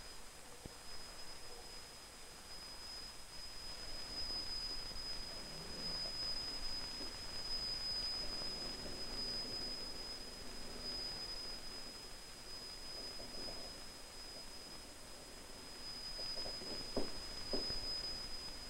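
Steady high-pitched 5,000 cycles-per-second test tone from an audio oscillator played through a horn loudspeaker, swelling and fading slightly as the probe microphone is moved through the grating's interference pattern. A few faint knocks come near the end.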